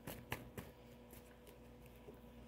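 Tarot deck handled and shuffled in the hands: a few soft card clicks in the first half-second or so, then quiet.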